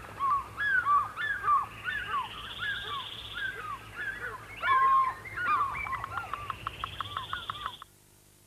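A chorus of wild birds calling: many short arching chirps, with a higher buzzy trill returning every couple of seconds and a quick rattling run of notes near the end. It cuts off suddenly just before the end.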